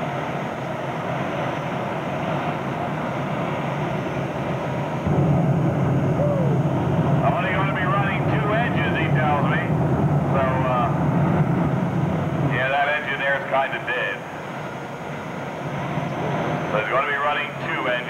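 Engines of a multi-engine modified pulling tractor running at the line, with one engine hard to start. About five seconds in the engine note jumps sharply louder as an engine fires and runs up, flames showing at the stacks. It drops back about seven seconds later.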